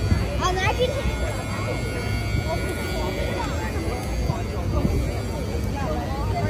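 Outdoor crowd chatter: scattered, overlapping voices of people walking past, with no one speaking close to the microphone, over a steady low rumble.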